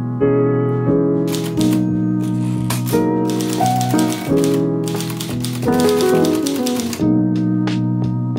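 Manual typewriter being typed on: a quick run of key strikes starts about a second in and lasts several seconds, thickest in the middle, over soft piano background music.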